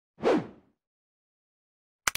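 A single whoosh sound effect of the kind used in video intros, about half a second long, dropping in pitch as it fades out.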